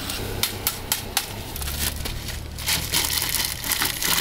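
Ice cubes shaken out of a plastic bag into an opened green coconut: the bag crinkling and the cubes clicking and clattering in quick irregular bursts. A low steady hum sits underneath from about one and a half seconds in.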